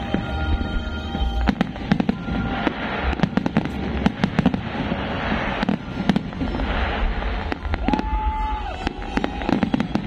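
Fireworks display: many shells bursting in quick, irregular succession, with crackling between the bangs.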